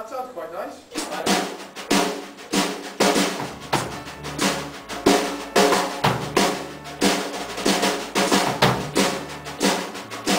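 Drum kit played in a studio room, snare and kick drum keeping a steady rock beat of about two hits a second, with an electric bass guitar holding low notes underneath. The playing starts right at the beginning after a brief silence.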